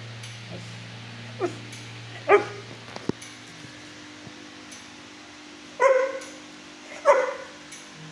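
Dog barking: a short sliding yelp about one and a half seconds in, then three single loud barks spaced a few seconds apart, the dog growing barky.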